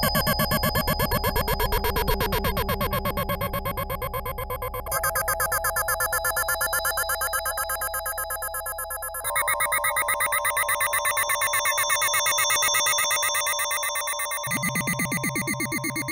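Yamaha DX7 IID FM synthesizer patch playing sustained chords with a fast, even pulsing, moving to a new chord about every four to five seconds. The synth is heard raw, with no processing.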